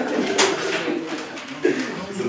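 A man chuckling in a low voice while handling a sheaf of paper, with a sharp crackle of paper sheets about half a second in.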